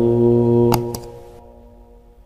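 A man's Quran recitation voice holding one long, steady note at the end of the word "lahu", fading out a little past the middle. Two sharp mouse clicks from a subscribe-button animation sound over it just before the note ends.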